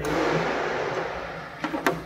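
Compressed air hissing out of a spray gun on a shop air line, starting suddenly and fading away over about a second and a half, followed by a few sharp plastic clicks near the end as the gun's cup is handled.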